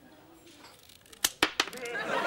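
Scissors snipping through a plastic credit card: three sharp clicks in quick succession a little over a second in.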